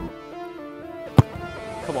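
Background guitar music playing steadily, with a single sharp thud about a second in: a football being kicked for a free kick.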